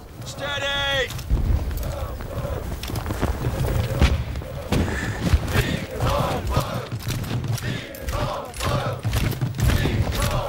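Battlefield musket fire: ragged volleys and many scattered shots over a heavy low rumble, with men shouting, once about half a second in and again around the six- and nine-second marks.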